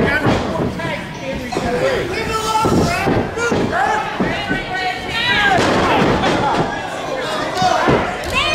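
Several thuds of wrestlers' bodies hitting the ring mat, amid shouting voices from the crowd and wrestlers.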